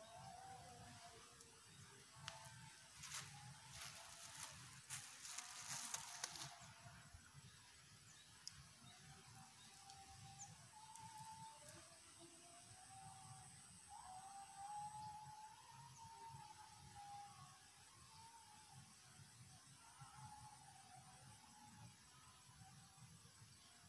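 Near silence: quiet outdoor ambience with faint, wavering animal calls that rise and fall throughout, and a run of soft clicks a few seconds in.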